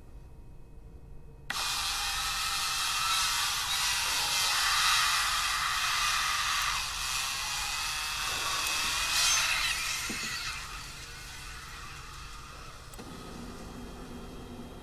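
A sudden burst of loud hissing static, with wavering whining tones running through it, cuts in about a second and a half in. It fades away around ten seconds, and a low steady drone is left near the end.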